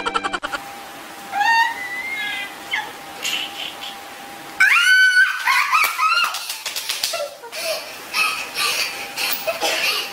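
A young woman's hard, high-pitched laughter in bursts, with a loud shrieking peak about five seconds in, followed by breathy giggling.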